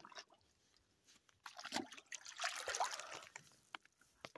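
Shallow lake water trickling and sloshing at the edge, in small irregular splashes. It starts about a second and a half in and lasts about two seconds.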